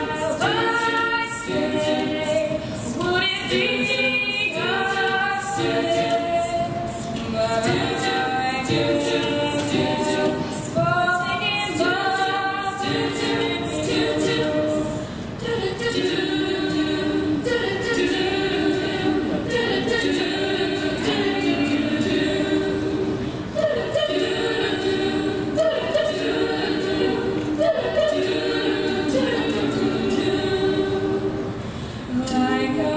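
Female a cappella group singing in harmony, with a higher melody line over the group's chords. A quick, steady beat of sharp clicks runs under the singing through the first half, after which the voices hold chords that change in rhythm.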